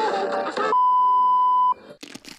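Music breaks off just under a second in and gives way to a single steady electronic beep, one pure tone held for about a second, which cuts off shortly before the end.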